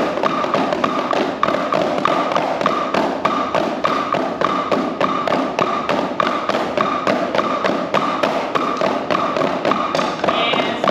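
Several drumsticks striking practice pads together in a steady, even rhythm of single strokes: an 'eight on a hand' stick-control exercise, eight strokes with one hand and then eight with the other.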